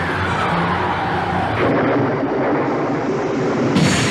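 Sound effects from an animated film trailer's soundtrack: a sound gliding down in pitch, then a sudden rush of noise about a second and a half in, and an abrupt loud hit near the end, over low held music.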